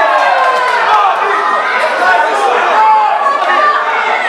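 Ringside crowd at a boxing bout: many voices talking and calling out over one another at once, loud and continuous.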